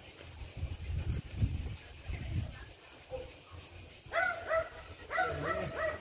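A dog whining and yelping in a run of short, high, rising-and-falling cries, starting about four seconds in. Before that there are only low rumbles on the microphone.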